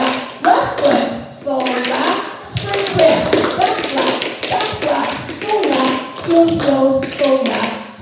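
Several dancers' tap shoes striking the studio floor through a tap combination: quick, uneven clusters of taps and stamps. A woman's voice calls the steps over them.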